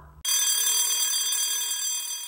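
A single ringing bell-like tone that starts suddenly and slowly dies away.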